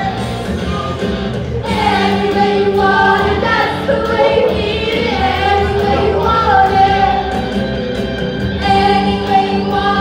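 A group of singers performing a rock song over a rock band, the voices coming in together a couple of seconds in and holding long notes.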